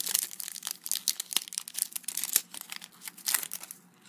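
Shiny plastic wrapper of a Panini Adrenalyn XL trading-card booster pack being torn open and crinkled by hand, a dense run of sharp crackles that thins out near the end.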